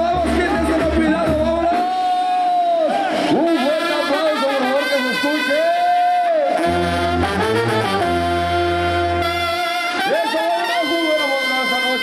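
Brass band music with trumpets and trombones playing sustained notes over a deep bass line that drops out for a few seconds and comes back about halfway through.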